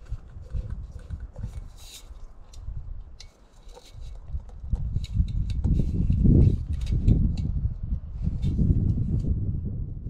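Light clicks and knocks of an MSR backpacking stove and its pot being handled, over a low rumble that grows much louder about halfway through.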